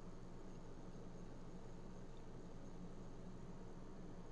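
Faint steady room tone: a low hum and light hiss, with no other sound.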